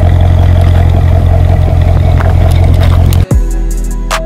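Deep, steady car engine rumble that cuts off abruptly just after three seconds in, followed by music with sharp drum hits.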